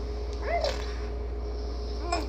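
A baby's single short vocal sound, rising then falling in pitch, about half a second in, over a steady low hum.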